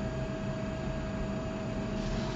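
Steady background hiss with a faint, constant hum tone: the room tone of the recording during a pause in speech.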